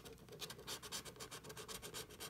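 Coating of a Golden Ticket scratch-off lottery ticket being scratched off in quick, short strokes, a faint rapid rasping.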